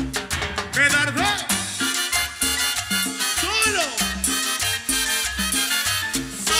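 Live Latin dance orchestra playing an instrumental passage: bass and congas keep a steady dance beat under trombone and saxophone lines, with a few swooping pitch glides.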